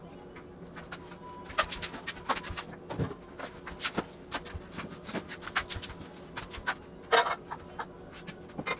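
Irregular light clicks and knocks, with a few dull thumps and one louder click near the end, over a faint steady hum: the small noises of a person moving about a room.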